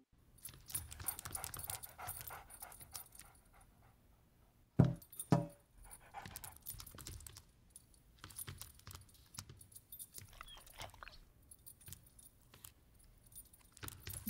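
A dog moving about, with faint jingling like collar tags and scattered light clicks. Two short, loud sounds come about half a second apart some five seconds in.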